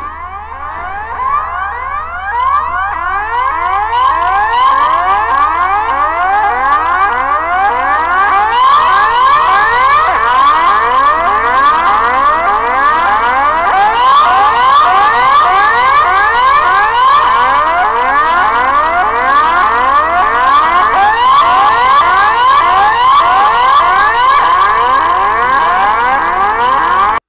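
Electronic film score made of a dense stream of short rising sweeps, like an arcade machine, over a steady high tone, with a low hum underneath. It builds up over the first few seconds and then holds steady.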